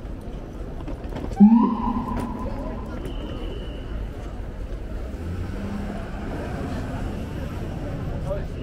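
Busy city-street crowd noise with people talking nearby and traffic underneath. About a second and a half in, a sudden, loud, short pitched sound cuts through.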